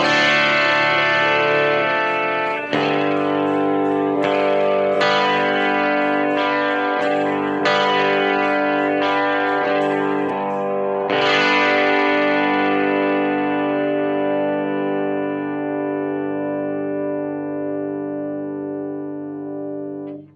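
Electric guitar strumming chords slowly: a strum every second or so, then a last chord left ringing for several seconds and slowly fading before it is stopped.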